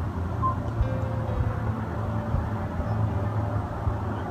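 Soft background music with sustained notes over a steady low hum.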